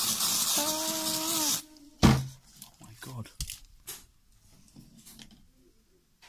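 Aerosol cold spray hissing steadily onto an infected finger to numb it before lancing, cutting off suddenly about one and a half seconds in, with a short held hum from a voice over it. Then comes a sharp knock, the loudest sound, followed by a few light clicks of handling.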